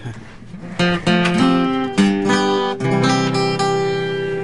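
Acoustic guitar starting a song's intro about a second in, notes and chords picked and strummed with clear, ringing attacks.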